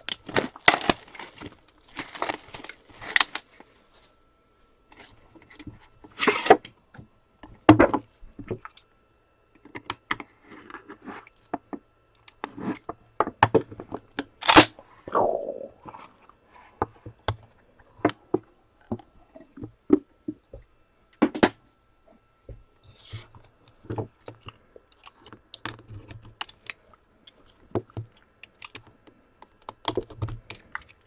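Cardboard trading-card box being opened and handled by gloved hands: scattered scraping, rubbing and tearing of the packaging with light clicks, and one loud sharp snap about halfway through.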